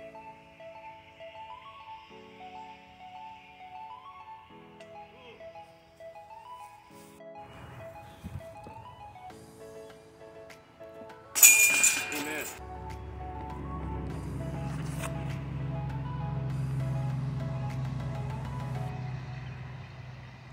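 Background music with a plain stepped melody, then about eleven seconds in a disc crashes into a metal disc golf basket: one loud metallic clash with a short ring of the chains. A steady low rumble follows to the end.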